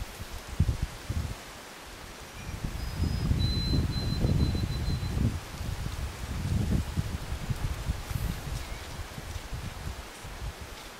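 Wind gusting over the microphone and stirring leaves and brush in uneven swells, loudest about three to five seconds in.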